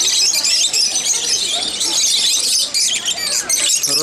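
A flock of rosy-faced lovebirds chattering: a dense, nonstop stream of shrill, rapid chirps and squeaks.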